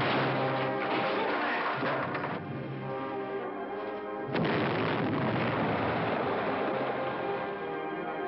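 Dramatic orchestral TV score, then a stick of dynamite exploding about four seconds in, the blast followed by a long rumbling noise under the music.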